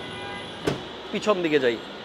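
Brief untranscribed speech from a person nearby, preceded by one sharp click less than a second in.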